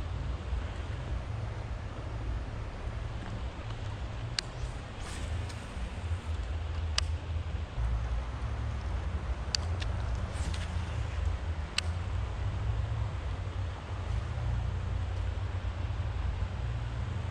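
Steady low rumble of wind on the microphone over the even wash of river water, with a handful of sharp clicks scattered through the middle.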